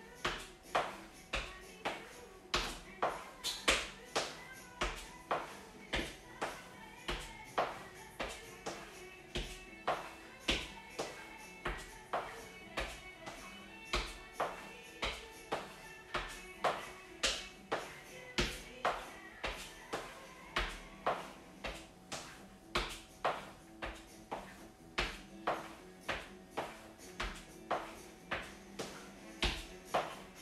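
Trainers tapping on a wooden floor and exercise mat in a rhythm of about two taps a second, the feet alternating through chair mountain climbers, over quiet background music.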